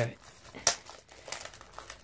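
Plastic packaging crinkling with a few sharp clicks, the loudest about two-thirds of a second in, as a Blu-ray case is handled.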